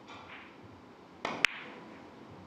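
Carom billiard balls struck on a three-cushion table: a knock, then a sharp click of balls colliding about a second and a half in, the loudest sound.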